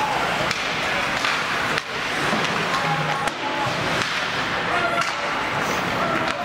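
Ice hockey play in an indoor rink: skates scraping the ice over a steady hiss, with several sharp clacks of sticks and puck and voices calling out.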